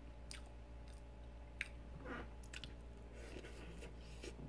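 Faint close-up mouth sounds of a man chewing and biting into a chocolate-glazed donut, with a few short, soft wet clicks and smacks.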